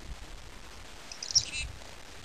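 Black-capped chickadee giving one short, high-pitched call about halfway through.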